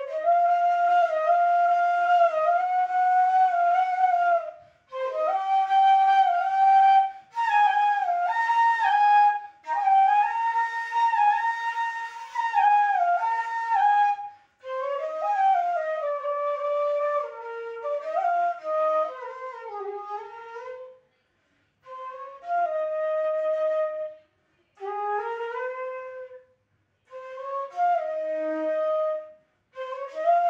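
Solo bansuri, a bamboo transverse flute, playing a slow melody of held notes with slides between pitches. It plays in breath-length phrases, each separated by a short pause.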